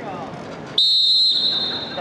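Referee's whistle blown once in a single loud blast about a second long, starting the wrestling bout.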